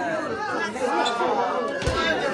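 Several people talking at once in a room, overlapping chatter with no one voice standing out. A single low thump comes near the end.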